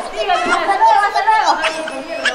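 Voices talking over one another, with no other distinct sound.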